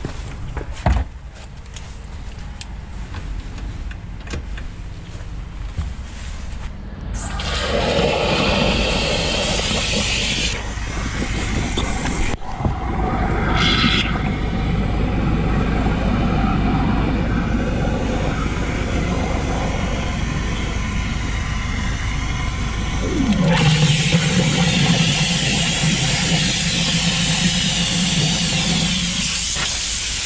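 Engine-driven high-pressure drain jetter: an engine hum at first, then about seven seconds in the water jet opens with a loud, steady rushing hiss of water blasting through the blocked sewer drain, cutting out briefly twice. About two-thirds through a low tone slides down in pitch and holds steady under the hiss.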